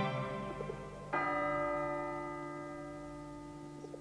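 Background music fading out, then a single bell stroke about a second in, ringing on with several held tones and slowly dying away.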